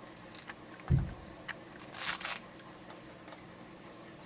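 Hands handling a short strip of Velcro against fabric at a sewing machine: light scattered clicks and rustles, a soft thump about a second in, and a brief rasp about two seconds in.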